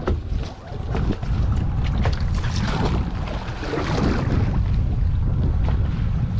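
Wind buffeting the camera microphone on an open boat at sea, a steady low rumble, with water moving against the hull and a few light knocks.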